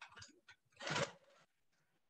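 Acrylic quilting ruler being handled and set in place on the quilt at the longarm: a few light clicks, then a short scuffing rustle about a second in.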